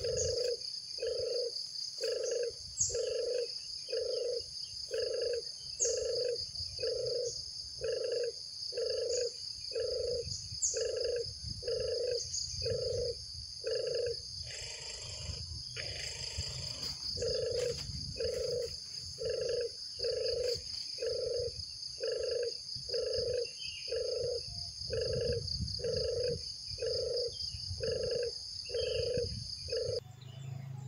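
Forest ambience: a steady high-pitched insect drone with a few brief bird chirps over it, and a low hooting call repeated about once a second, pausing briefly around the middle while something rustles.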